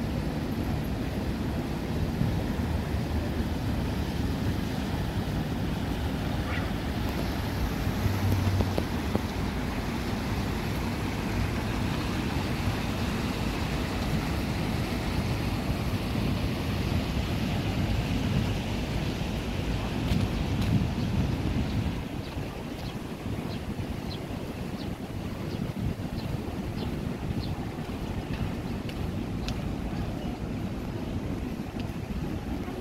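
Shallow stream water running over rocks, with wind rumbling on the microphone. The wind rumble eases about two-thirds of the way through.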